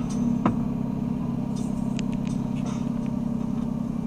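A car driving on a road, engine running steadily with tyre and road rumble, heard from inside the cabin through a windscreen dashcam. The last beat of a drum-machine music track lands about half a second in.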